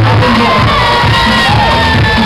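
Concert crowd cheering and screaming over loud dance music with a steady bass beat.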